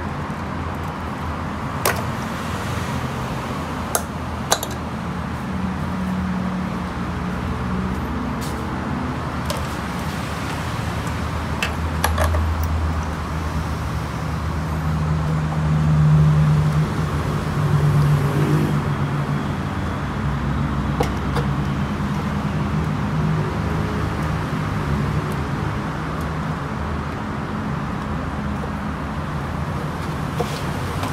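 Steady vehicle engine noise in the background, swelling louder about 15 to 19 seconds in as a vehicle passes. Over it, a few sharp clicks and knocks of screws and plastic parts as the fuel pump assembly is unscrewed and lifted out of the motorcycle's fuel tank.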